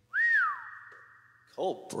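A person whistling: a quick note that rises and falls, then a long steady high note held for about a second and a half. Near the end a man starts to speak and there is a sharp click.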